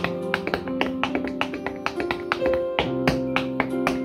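Flamenco-style footwork: hard-soled shoes striking a wooden board in a quick, uneven run of sharp heel and toe beats, several a second, over music with held notes.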